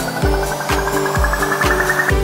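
Future house electronic dance track: a steady kick drum about twice a second under a build-up of fast repeated notes climbing steadily in pitch.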